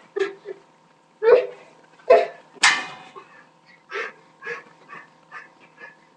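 Dog barking in short, sharp barks, about two a second toward the end, with a louder, longer yelp near the middle.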